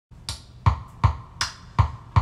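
A click count-in: five sharp, evenly spaced clicks, a little under three a second, setting the tempo before the music starts.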